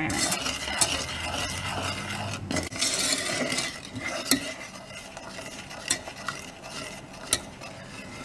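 Wooden spoon stirring sugar syrup around a small metal saucepan, scraping the bottom and sides, with a few light knocks against the pan. The stirring is louder for the first few seconds and then quieter; the sugar is being dissolved in the water and golden syrup before boiling.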